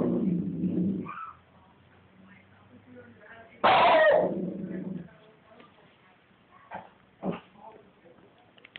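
A small Lhasa Apso dog vocalising twice: a low, drawn-out sound about a second long at the start, then a louder, harsher one about midway that falls in pitch.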